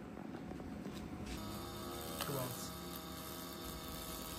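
XLaserLab X1 Pro handheld laser welder buzzing steadily as it fires, starting about a second in.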